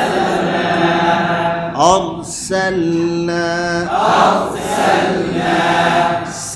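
A man's voice chanting Quranic Arabic in a melodic recitation style, holding long drawn-out notes. The pitch glides upward just under two seconds in, then settles into further held notes.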